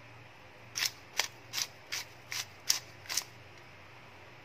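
A small seasoning shaker shaken in seven quick, even strokes, about two to three a second, each a short sharp rattle.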